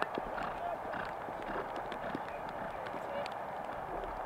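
Faint hoofbeats of a horse cantering across turf, as soft irregular thuds over a steady background hiss.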